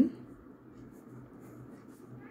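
Ballpoint pen drawing lines on paper, a faint scratching.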